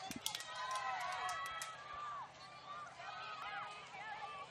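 Distant overlapping shouts and calls from ultimate frisbee players and the sideline across an open field, with a few sharp claps in the first second and a half.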